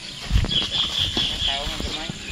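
Hoes chopping into damp soil, with several dull thuds, under people's voices. A high steady tone sounds for about a second in the middle.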